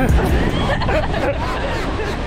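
A babble of several people's voices talking over one another, none clearly in front, slowly growing fainter.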